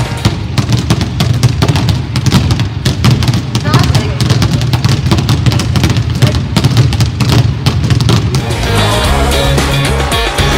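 Several basketballs being dribbled at once on a sports hall floor: a rapid, irregular patter of bounces. The bounces stop near the end.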